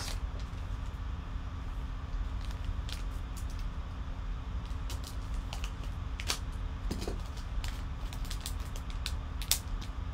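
Foil trading-card pack being handled and torn open: scattered crinkles and sharp clicks over a steady low hum.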